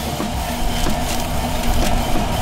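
A metal spatula scraping under baked cookies on a baking tray as they are lifted.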